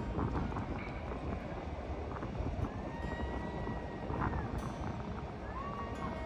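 Wind buffeting the microphone with a steady low rumble, with faint music carrying a few long held notes in the second half.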